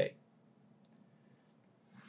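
Near silence: faint room tone after the end of a spoken word, with a single faint click just under a second in.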